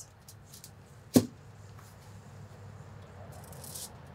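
Quiet handling at a table while a raw chicken is being prepared, with one sharp click about a second in and a brief hiss near the end.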